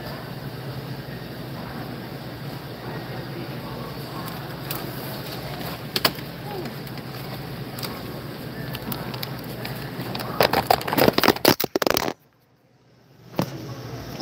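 Shrink-wrapped 24-packs of Powerade plastic bottles being handled, with plastic crinkling and knocks over a steady store hum. Near the end comes a quick run of loud clattering knocks, then the sound cuts out for about a second.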